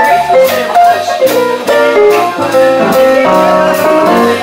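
Live small jazz band playing an instrumental swing passage: pitched melody notes over a moving bass line, with drum-kit strikes keeping a steady beat.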